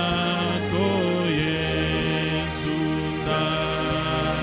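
A man singing a slow Swahili worship chorus into a microphone, in long held notes that glide between pitches, over steady sustained accompaniment.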